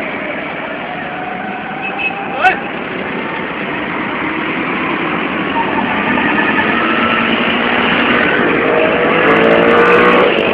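Street noise of vehicle engines running, mixed with people's voices, growing steadily louder toward the end, with one sharp click a couple of seconds in.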